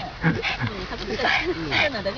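Indistinct talking from people nearby, with a dog whimpering among it.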